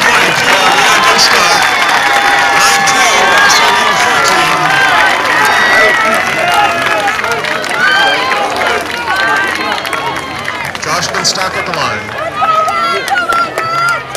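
Spectator crowd in outdoor stands, many voices talking and shouting over one another, growing quieter over the last few seconds.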